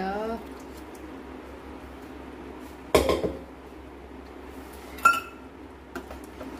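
Stainless-steel cookware clanking twice: a heavier clunk about halfway through and a sharper, ringing metallic knock near the end.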